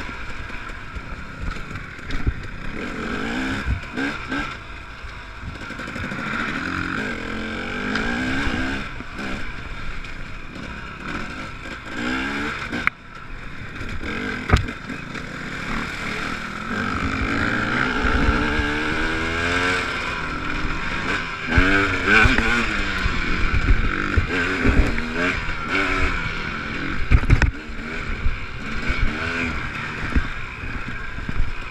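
Dirt bike engine heard from the bike itself, revving up and down over and over as the rider works the throttle on a rough trail, with knocks and rattles from the bumps.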